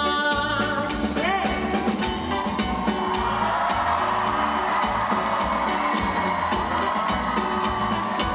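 Live band playing a pop song: a male singer's line ends in the first couple of seconds, then the band plays on under audience cheering and whoops.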